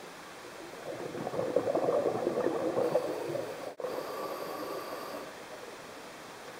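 Scuba diver's exhaled bubbles from the regulator, a burst of bubbling that builds about a second in, then cuts off sharply a little before four seconds, leaving a faint steady underwater hiss.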